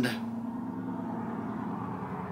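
A truck with big tyres driving past, a steady low engine and road rumble.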